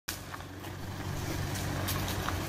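Engine of a search-and-rescue pickup truck running as it drives slowly, a low steady hum that grows louder as the truck approaches.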